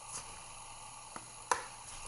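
Hands twisting the orange plastic ring and blue latex pouch of a pocket shot slingshot, trying to unscrew it: faint rubbing and handling noise, with a small click and then a sharper click about one and a half seconds in.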